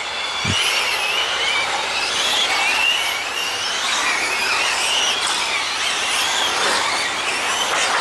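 Several electric 1/8-scale GT RC race cars running on the track. Their motors whine at high pitches that waver up and down with the throttle, over a steady rushing hiss.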